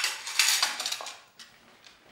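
White ceramic plates and cutlery clattering as they are stacked together by hand: a sharp clatter at the start, a dense run of clinks through the first second, then a few light clicks.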